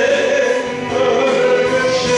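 A man singing a Christian worship song into a handheld microphone over musical accompaniment, holding long notes.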